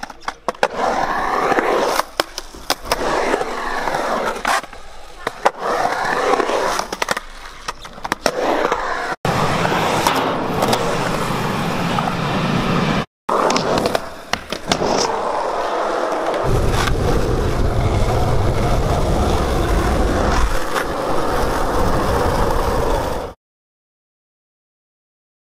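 Skateboard wheels rolling and carving around a concrete bowl, the rolling pitch sweeping up and down as the skater pumps the transitions, with sharp clacks of the board and trucks on the concrete. A heavier low rumble takes over in the later part, and the sound cuts off suddenly near the end.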